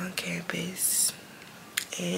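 A woman speaking quietly in short phrases, with a sharp hiss about a second in and a small click near the end.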